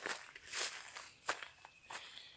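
Footsteps on dry grass, a few soft swishing steps about every half second or so.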